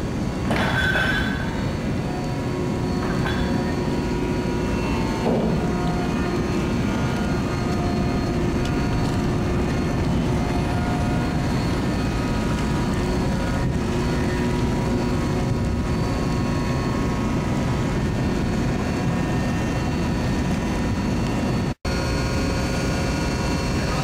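Steady drone of an offshore vessel's deck machinery, a continuous mechanical rumble with faint steady whining tones over it. It cuts out for an instant near the end.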